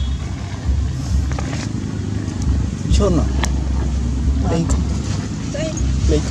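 Outdoor ambience with a low, uneven rumble, plus a few short voice-like calls that glide in pitch from about halfway in.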